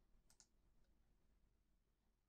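Near silence, broken only by two faint computer mouse clicks close together about a third of a second in.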